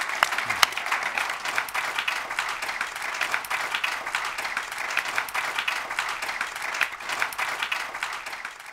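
Audience applause: many people clapping steadily.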